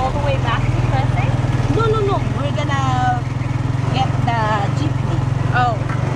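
A vehicle's engine running steadily with a fast, even pulse, heard from inside the open-sided vehicle as it drives. People talk over it.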